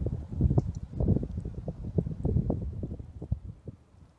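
A run of irregular low thumps and knocks over a low rumble, dying away and stopping at about four seconds.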